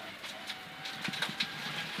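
Mitsubishi Lancer Evo X rally car at speed on gravel, heard from inside the cabin: the engine runs under a steady road noise, with many small knocks and clicks of gravel and stones striking the underbody.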